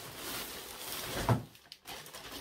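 Rustling and crinkling of a parcel bag as a hand rummages inside it, then one loud thump about a second and a quarter in.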